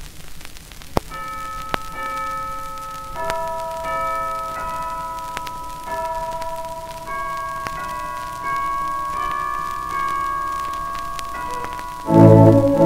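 A 78 rpm shellac record playing a soft, quiet passage of organ music: slow, sustained, bell-like notes moving through a carol melody, with clicks and crackle from the disc's surface.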